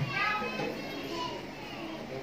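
Children's voices and chatter in the background, strongest in the first half second and fading to a low murmur.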